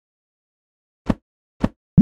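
Cartoon-style pop sound effects: two short plops about half a second apart, then a louder one that quickly rises in pitch at the very end.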